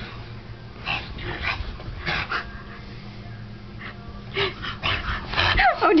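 Bulldog playing: short noisy huffs and scuffles every second or so, then a cluster of high, bending cries near the end.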